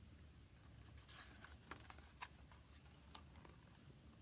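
Near silence with faint paper rustling and a few soft ticks as a picture book's page is turned by hand.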